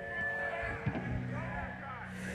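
Quiet stretch between songs on a rock club stage: steady hum and held tones from the band's amplifiers, with faint crowd voices mixed in.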